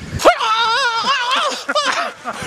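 A man's high, wavering falsetto 'oooh' against the biting cold, held about a second and a half. Wind buffeting the microphone drops away just as the cry begins.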